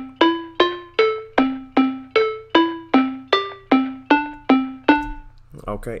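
Omnisphere software synth playing a single-line melody of plucked-sounding notes, about two and a half a second, each struck sharply and fading. The melody is a MIDI line generated by AudioCipher from typed words in C major. It stops about five seconds in.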